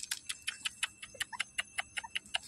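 Rapid, regular high ticking, about six ticks a second, over a faint steady high tone.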